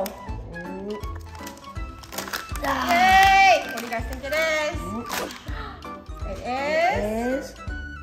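A child's and a woman's excited voices, including a long drawn-out exclamation about three seconds in, over light background music.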